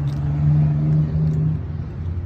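A motor vehicle's engine running with a steady hum. Its pitch rises slightly early on, then falls back and quietens about one and a half seconds in.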